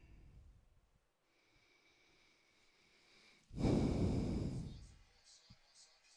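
A person's breath on a live microphone: one loud, rushing exhalation about three and a half seconds in, lasting about a second and fading out.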